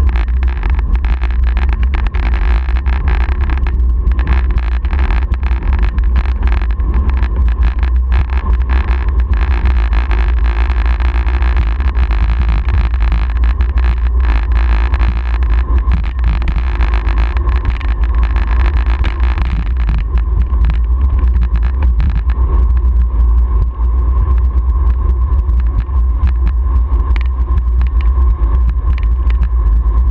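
Wind buffeting the microphone of an action camera mounted on a moving road bicycle: a loud, steady low rumble with road and tyre hiss over it. The hiss thins out about twenty seconds in.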